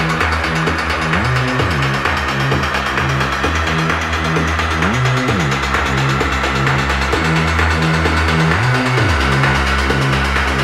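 Techno track in a DJ mix: a steady, repeating deep synth bass pattern, with short swooping pitch glides about a second in, near the middle and near the end.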